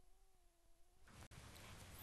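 Near silence: a very faint, slightly wavering tone in the first second, then faint studio room noise rising slowly.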